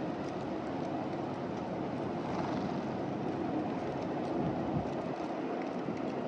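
Steady low rumble of urban background noise, swelling a little around the middle, with a few faint light clicks of mourning doves pecking seed off the pavement.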